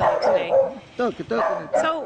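A dog barking in several short calls, with people talking around it.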